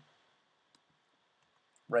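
A few faint, isolated keystrokes on a computer keyboard in an otherwise quiet room, then a man's voice starts right at the end.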